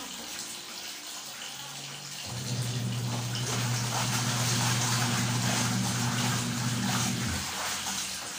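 Soapy water sloshing and swishing in a plastic basin as clothes are scrubbed by hand. A steady low hum joins from about two seconds in and stops near the end.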